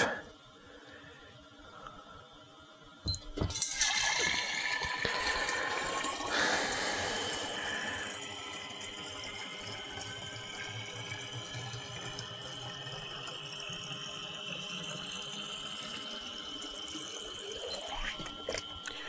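Water from a Topsflo TD5 DC brewing pump pouring through a stainless tube into a one-gallon glass jug. After a click about three seconds in, loud splashing starts and then settles into a steady rush whose pitch rises slowly as the jug fills. There is a second click near the end.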